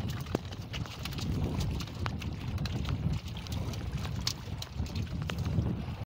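Wind rumbling on the microphone, with irregular light taps and knocks as a freshly caught fish and the fishing line are handled in the boat.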